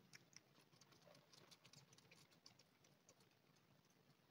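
Faint, irregular little clicks of a kitten suckling milk replacer from the rubber teat of a feeding bottle.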